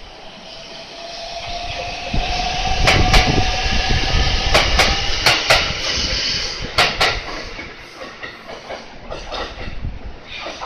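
A JR Central 313-series electric train running along the next track: a steady motor whine that creeps up in pitch, with several pairs of sharp clacks as its wheelsets cross rail joints. It builds, is loudest in the middle, and fades near the end.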